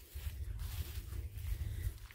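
Low, uneven rumble on the microphone of a handheld camera being carried along outdoors, over a faint background hiss.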